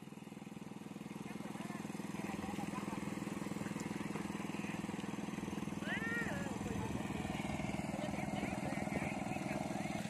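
A small engine running steadily with an even pulsing hum, growing a little louder over the first few seconds. A distant voice calls out briefly about six seconds in.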